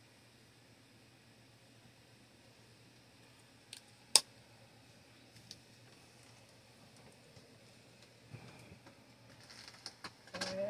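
Quiet room tone with a low steady hum, broken by a sharp click about four seconds in, with a smaller click just before it and another about a second after. Faint rustling near the end.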